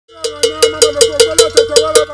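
Hand-held iron bell struck in a fast, even rhythm, about five strikes a second, each stroke ringing with a clear metallic tone.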